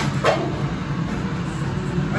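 Restaurant background noise: a steady low hum with a sharp click about a quarter of a second in.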